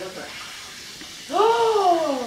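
A person's long, drawn-out vocal exclamation, not a word, starting about a second and a half in, its pitch rising and then falling.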